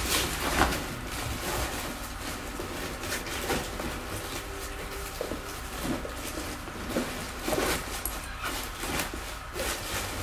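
Rustling and handling of a fabric backpack and bag being packed by hand: irregular rustles and light knocks over a steady low hum.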